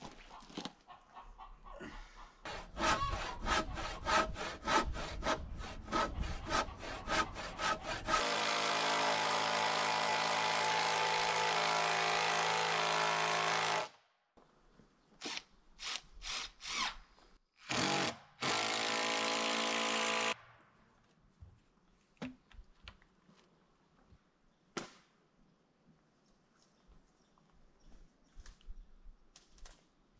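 A quick series of knocks, about three or four a second, then a power drill running steadily for about six seconds and a few shorter bursts, driving a fastener into a log rafter joint.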